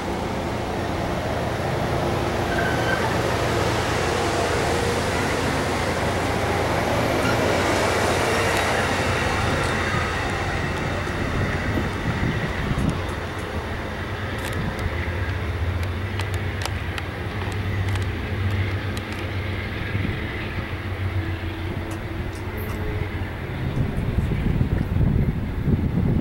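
An Amtrak passenger train's stainless-steel coaches rolling close past, with a broad rush of wheel and air noise over a steady low rumble. The rush fades about halfway through as the rear car draws away, leaving the rumble and a scatter of sharp clicks from the wheels on the rails.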